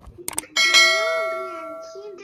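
A couple of quick mouse clicks, then a bell ding that rings with several tones and fades over about a second and a half: the subscribe-button and notification-bell sound effect added in editing.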